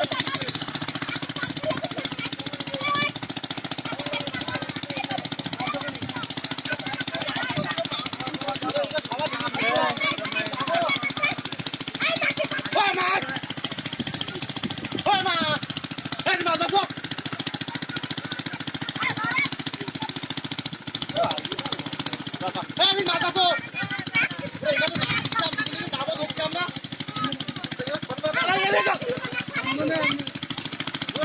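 A small engine running steadily with a fast, even knocking beat, with people's voices calling out over it now and then.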